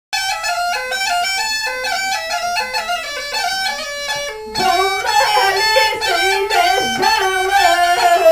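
Bulgarian gaida bagpipe playing an ornamented folk melody with quick note changes. About halfway through a woman begins singing with it into a microphone and the music grows louder and fuller.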